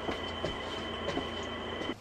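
Steady background hum with a thin high whine, as from an electrical appliance or fan in the room, with a few faint clicks. It cuts off abruptly just before the end.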